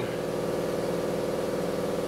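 A motor running with a steady, even hum of several stacked tones.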